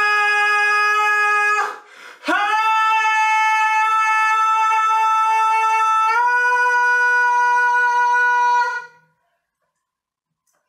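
A male singer holding a long, high note with no accompaniment, breaking off briefly for a breath about two seconds in and scooping back up into it. The note steps up in pitch about six seconds in and cuts off shortly before the end.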